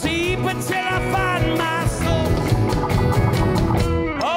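A live rock band playing: drums, electric and acoustic guitars, bass and keyboards.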